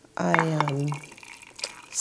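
A woman's voice holds one short, drawn-out syllable, followed by a few faint small clicks.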